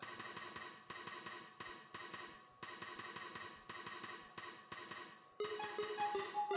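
MIDI file playing back on a synthesizer: a drum pattern of side-stick and closed hi-hat strokes at a steady beat, about three a second. Pitched melody notes come in near the end.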